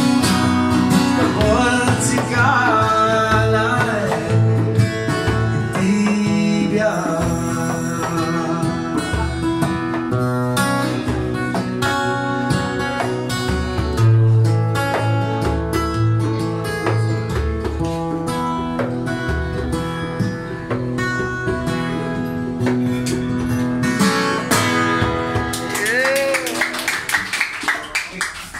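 A man singing to his own strummed acoustic guitar, played live. The song winds down near the end.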